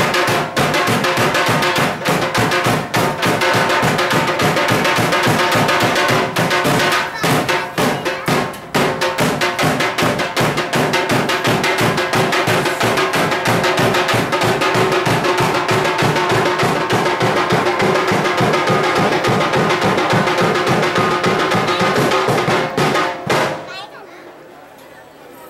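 Large barrel drums (dhol) beaten fast and continuously in a dense, driving rhythm, over a steady held tone. The drumming breaks off suddenly near the end.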